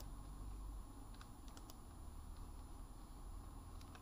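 Faint low rumble with a few scattered soft clicks.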